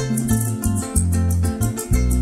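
Live llanera music from a harp, cuatro and electric bass band playing an instrumental passage between sung verses, with a steady rhythm and the bass changing notes about every half second.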